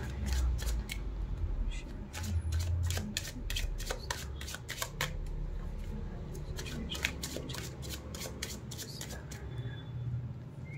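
A tarot deck being shuffled by hand: a run of quick soft slaps and flicks of the cards, busiest in the first half and thinning out toward the end.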